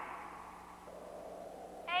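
A woman's shouted call dying away in a reverberant room, then low background hiss. Near the end she calls out "Hey".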